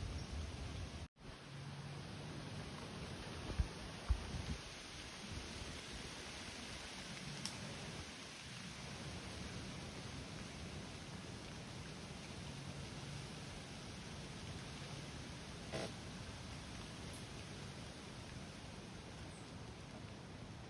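Faint, steady outdoor background hiss, with two soft knocks between three and four seconds in and a faint tick about sixteen seconds in.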